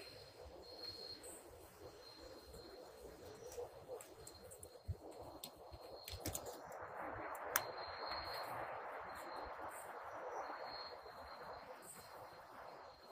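Quiet night-time forest ambience: a faint thin steady high insect tone, with a soft rushing noise that rises about halfway through and a few small clicks.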